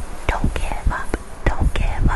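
A woman's voice whispering breathily, with short clicks between the sounds and no sung notes.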